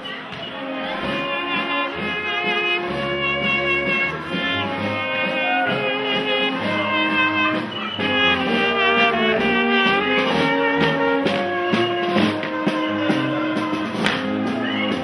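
Brass band playing a tune, with tubas carrying the bass line under a trumpet, and a drum.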